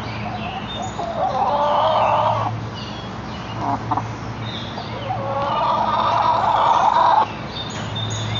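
Chickens calling: two long, drawn-out calls of about two seconds each, the first about a second in and the second about five seconds in, over a steady low hum.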